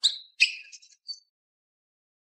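Cardboard box flaps being pulled open, a few short, high-pitched scraping rustles in about the first second.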